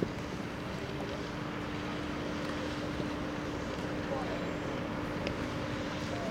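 Outdoor ambience: a steady broad rush of wind and background noise with a thin, constant low hum under it, and a few faint ticks scattered through it.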